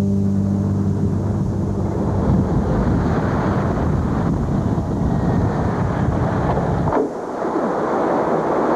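Pickup truck driving on a dirt road, its engine running and tyres rolling on gravel as it approaches. The rumble cuts off abruptly about seven seconds in, followed by a sharp click as the truck door opens.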